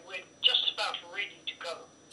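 Speech over a telephone line: a thin, quieter voice in short broken phrases, the other side of a phone conversation.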